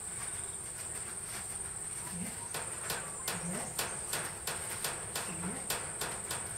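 Steady high-pitched insect drone of crickets or cicadas. From about halfway through, a run of crisp ticks comes about twice a second.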